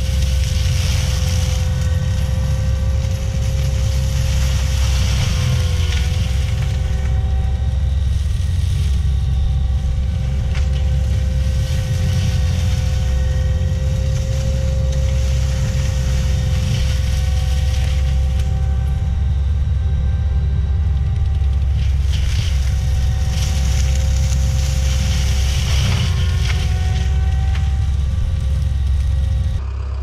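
ASV RT-120F compact track loader's diesel engine running under load while its Prinoth drum mulcher grinds brush: a steady low rumble with a steady whine, and a hiss of shredding that swells several times as the mulcher bites into the brush.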